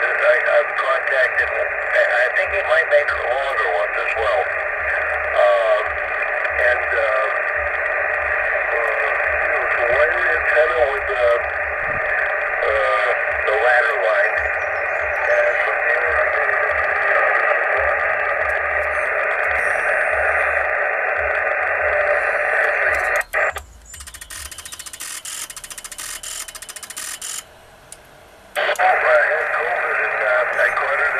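Single-sideband voices on the 20-metre band at 14.313 MHz, heard through a Yaesu FT-857 transceiver's speaker as thin, narrow-band radio speech. About 23 seconds in the voices cut off and a quieter hiss runs for about four seconds, then a moment of low level, before the voices return near the end.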